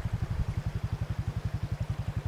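ATV (four-wheeler) engine running steadily at low speed, a rapid, even low putter of about fifteen to twenty pulses a second.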